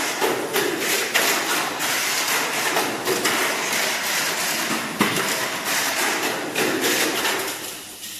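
Tamiya Mini 4WD car with an SFM chassis and Light-Dash motor running at speed on a plastic multi-lane track: a dense, rushing whir of motor and gears with a rapid clatter of rollers and chassis against the lane walls. There is a sharp knock about five seconds in, and the noise falls away near the end.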